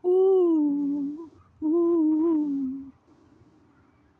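A lone voice humming the melody with no accompaniment, in two held phrases that each sag in pitch. It stops about three seconds in.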